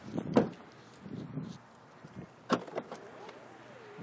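An SUV door shutting with a solid thump about half a second in, followed by handling noise and a sharp click a couple of seconds later.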